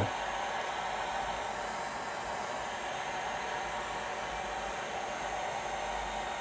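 Electric heat gun running steadily, its fan blowing a constant rush of air as it heats a mass airflow sensor's intake-air temperature element.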